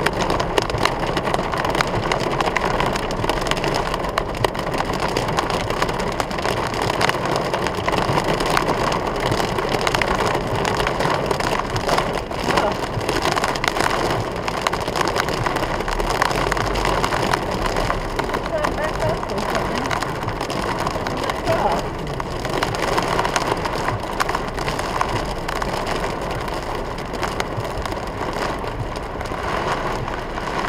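Heavy rain drumming on a car's roof and windscreen, heard from inside the cabin as a dense, steady patter of countless drops.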